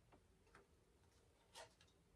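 Near silence with a few faint clicks of tarot cards being handled and laid down, the clearest one about three-quarters of the way through.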